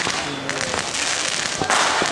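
Firecrackers going off in a run of rapid crackling pops, with a louder burst near the end, over the voices of a crowd in the street.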